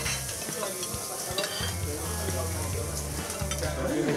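Restaurant ambience in a busy tapas bar: a steady sizzling hiss with knife and fork scraping and clicking on plates.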